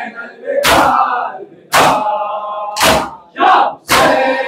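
Mourners beating their chests in unison in matam: a sharp collective slap about once a second, four in all, with a crowd of voices calling out between the beats.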